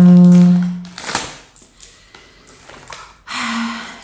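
A woman's drawn-out hesitation sound, one steady held 'eeh' at the start lasting about a second, followed by light clicks and taps of plastic eyebrow-stencil pieces being handled, and a short murmur near the end.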